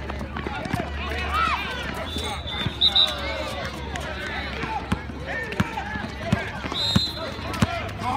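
A basketball being dribbled on an outdoor asphalt court, with repeated sharp bounces and players' running footsteps, under the shouting voices of players and spectators. Two short, high-pitched squeals come about three seconds in and again near the end.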